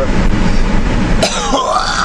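A man coughs and clears his throat about a second in, over the steady low rumble of a moving truck's cabin.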